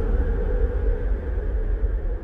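Electronic techno track outro: a sustained low rumbling drone with a haze of noise and no beat, slowly fading.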